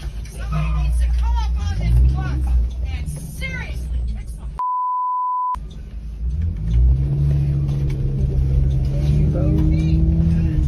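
School bus engine and road rumble heard from inside the bus, with voices over it in the first few seconds. About halfway through, a steady high censor bleep blots out all other sound for just under a second. Then the engine note rises steadily as the bus accelerates.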